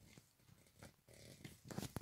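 Faint sounds of three-week-old Yorkshire terrier puppies: a brief soft puppy vocalisation about a second in, with a few light scuffling taps of paws on a fleece blanket.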